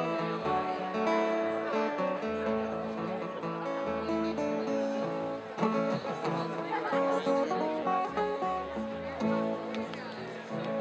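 Live acoustic folk ensemble playing a tune: strummed acoustic guitars with fiddles and a bass line stepping between notes underneath.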